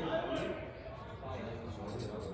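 People talking in a frontón court, with a few sharp knocks of a frontenis ball striking the court.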